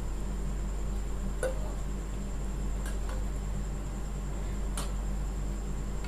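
Steady low hiss and hum from a pot of water at the boil on a gas stove, with three faint light clicks spread over the few seconds as washed rice is tipped from a steel saucepan into the water.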